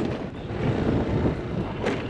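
Motorbike running at low speed along a bumpy dirt track, with wind on the microphone and one sharp knock near the end.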